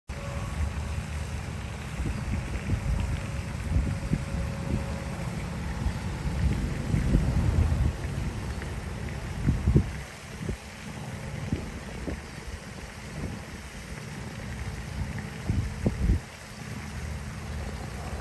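Wind buffeting the microphone in uneven gusts, with a couple of louder bumps, one about ten seconds in and another a little after fifteen seconds.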